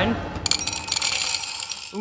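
Small candies tumbling out of a cardboard dispenser chute and clattering into a ceramic bowl. The rattle starts about half a second in and lasts over a second.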